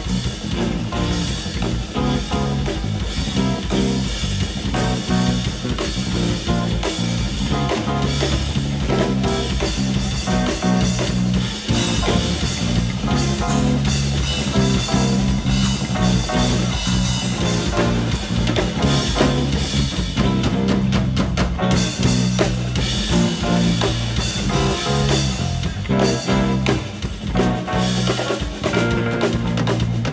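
A live funk/R&B band playing at full volume: electric guitar, bass holding steady low notes, and a drum kit keeping a busy groove.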